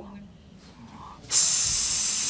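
A pause in speech, then a sharp hiss lasting about a second from a man's mouth close to a microphone, before his voice comes back.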